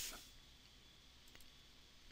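Near silence: faint room tone, with a couple of faint clicks in the second half.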